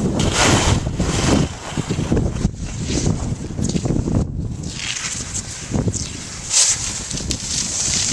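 Wind buffeting the camera's microphone in uneven gusts on a ski slope, with skis scraping over hard, icy snow as skiers pass close, loudest in a sharp surge near the end.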